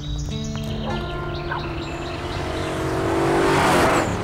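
A motorcycle passing close by, its noise swelling to a peak near the end and then falling away, over background music with sustained notes.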